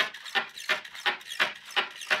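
Two hobby servo motors driving the legs of a homemade walking insect robot, making a rhythmic mechanical clatter of about three strokes a second as it walks.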